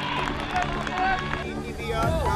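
Rugby match sideline sound: spectators shouting and calling out during play, with crowd chatter.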